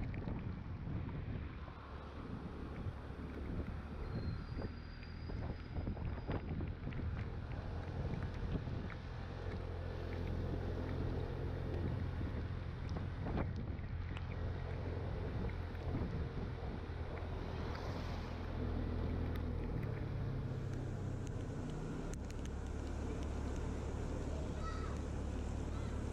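Scooter engine running steadily while riding, with wind on the microphone. Its pitch shifts a little near the end as the speed changes.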